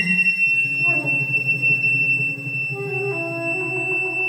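Contemporary chamber music for flute, saxophone and percussion: a very high woodwind note held steadily throughout over lower sustained notes, with new, lower held notes entering about three seconds in.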